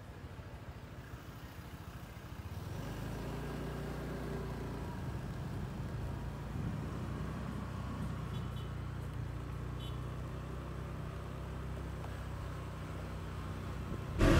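A motor vehicle's engine running with a low, steady hum that comes up about three seconds in, over quiet street ambience.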